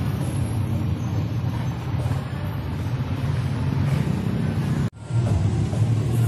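Tricycle motorcycle engine idling: a steady low rumble that breaks off for an instant about five seconds in, then resumes.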